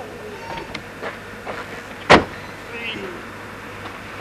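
A car door slamming shut once, about two seconds in, with faint voices around it.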